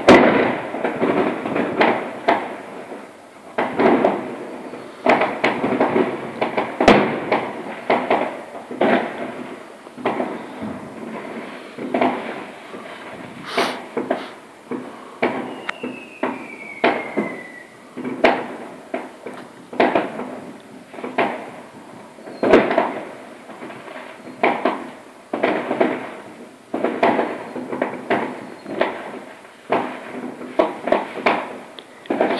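Fireworks going off outside and heard from inside a house: a continuous, irregular barrage of bangs and crackling reports, each with a short rumbling tail. A thin falling whistle cuts through about halfway.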